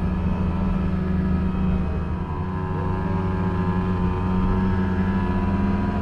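Yamaha Inviter snowmobile's small two-stroke engine running at a steady trail-cruising speed, its note dipping briefly about two seconds in.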